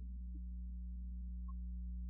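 Steady low drone hum through the sound system with the singing paused, and one brief high note about one and a half seconds in.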